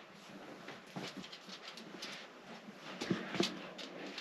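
A dog faintly heard, with a few light clicks.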